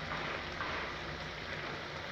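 Grated coconut and syrup bubbling and sizzling in a frying pan: a steady, fine crackle.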